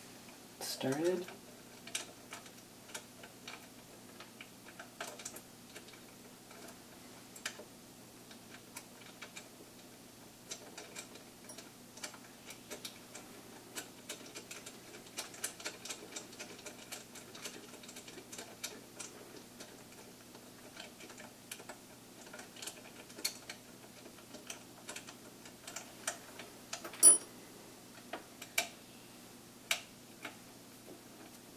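Scattered small clicks and taps of screws, nuts and hand tools handled and fitted on a 3D printer's aluminium frame during assembly, with one sharper, louder click near the end. A brief voice sound comes about a second in.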